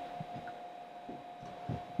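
Quiet studio room tone with a steady faint hum, and a few soft footsteps as someone steps back to their mark.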